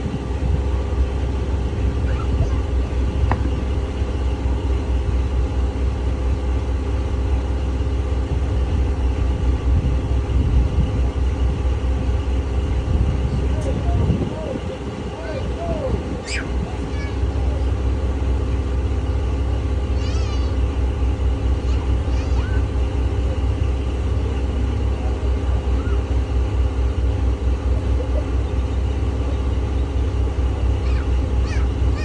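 Boat motor running at idle with a steady low drone; the sound briefly drops in level about fourteen seconds in.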